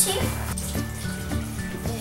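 Background music with a steady beat, over milk being poured from a mug into a saucepan of hot butter-and-flour roux.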